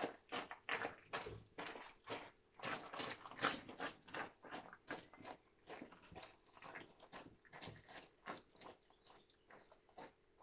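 Footsteps crunching on loose gravel, several a second, from a man carrying a heavy load and a small dog trotting beside him. Loudest in the first few seconds, then fading as they move away.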